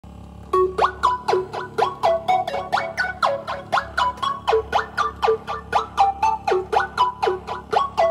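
Electronic music: a sequenced pattern of short, plucky synthesizer notes, about four a second, each sliding sharply up or down in pitch, starting about half a second in.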